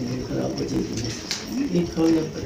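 Low, indistinct voice murmuring, with a short click about a second and a half in.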